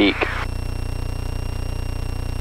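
Beechcraft Musketeer's piston engine running steadily at run-up power, about 2000 RPM, with the mixture leaned to peak RPM: a constant low drone with a fast, even firing pulse.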